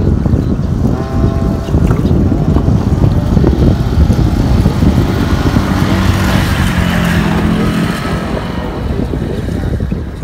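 Wind buffeting the microphone, a heavy, fluttering rumble throughout, with a steady pitched drone from outside traffic for a few seconds past the middle.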